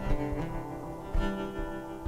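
Acoustic guitar played solo between vocal lines: two strummed chords about a second apart, each left to ring.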